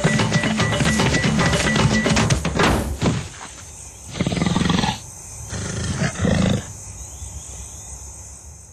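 Rhythmic soundtrack music that cuts off about three seconds in, followed by a lion calling twice: a longer rough call about four seconds in and a shorter one about six seconds in.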